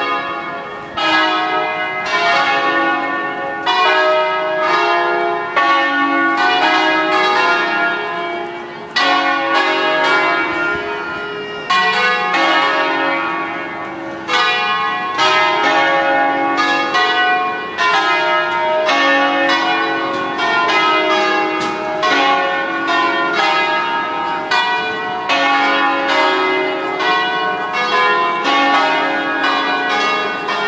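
Church bells ringing a peal, with many strikes in quick succession and each note ringing on under the next.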